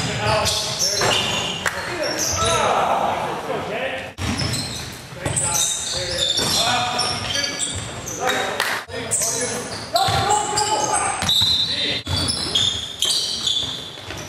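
Basketball bouncing on a hardwood gym floor with players' voices calling out during play, all echoing in a large hall.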